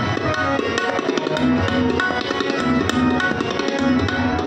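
Shabad kirtan music: harmoniums hold sustained notes while a tabla keeps a steady rhythm of sharp strokes and deep bass thuds.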